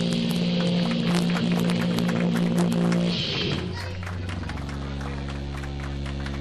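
Live rock band playing: electric guitar and bass hold a chord over drums and cymbal hits. About three and a half seconds in, the band shifts down to a lower, sustained chord.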